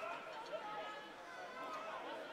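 Distant voices on a football pitch, players and spectators calling out, faint under an open-air background.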